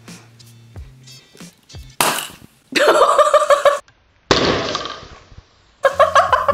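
A Ramune soda bottle opened by pushing its marble seal down, with one hand: a sudden loud hiss of released gas about two seconds in, then the soda fizzing and foaming over, the hiss dying away. A person's loud cry comes between the two hisses.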